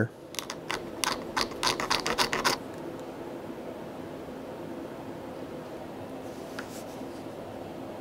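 A hand tool scraping black-dyed leather to rough up its smooth side for gluing: a quick run of about a dozen short scratching strokes over the first two and a half seconds. After that only a steady low hum remains.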